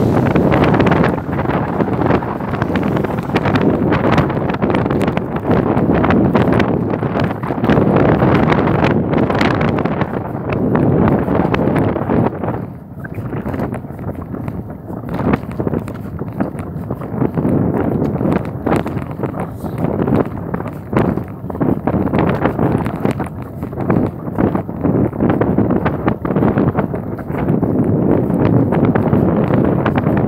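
Wind rushing on the microphone of a camera on a moving bicycle, a loud steady buffeting with many small knocks and rattles from the ride over the path surface. It eases briefly about 13 seconds in.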